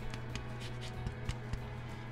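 A lemon being zested on a handheld rasp grater, with soft, irregular scratching strokes over a steady low hum.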